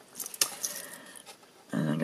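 Small scissors cutting into green cardstock: a couple of sharp snips as the blades close, the louder one about half a second in, over a faint steady hiss of heavy rain.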